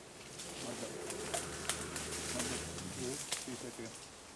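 Footsteps pushing through dense forest undergrowth: leaves rustling and several sharp cracks of twigs snapping underfoot.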